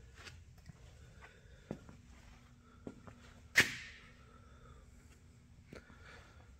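A single sharp knock a little past halfway, with a couple of fainter clicks before it, over a faint steady hum.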